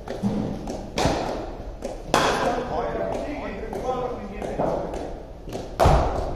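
Sharp knocks of a cricket ball in an indoor net hall: three echoing impacts of ball on bat, pitch or netting, about a second in, just after two seconds, and the loudest near the end, with indistinct voices in between.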